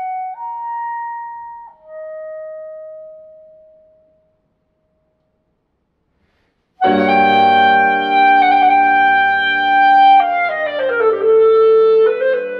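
A clarinet plays a slow, unaccompanied phrase of a few long held notes that fades away, followed by about two and a half seconds of silence. Clarinet and piano then come in loudly together, the clarinet holding a long note before stepping down through a quick descending run.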